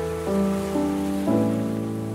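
Background piano music: slow, sustained notes and chords, a new one struck about every half second and fading.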